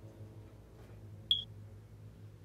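A single short, high-pitched electronic beep about a second in, over a low steady hum.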